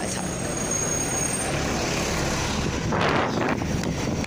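KMB double-decker bus running close by, a steady low engine rumble with a thin high whine in the first second and a half and a short hiss about three seconds in.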